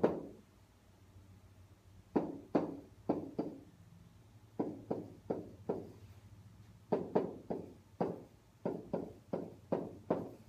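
Stylus knocking against the hard surface of an interactive whiteboard as equations are written. The knocks are sharp and come in quick clusters of three to six, with short pauses between, about twenty in all.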